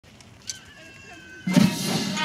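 Military brass band comes in suddenly and loudly about one and a half seconds in, after a quiet start.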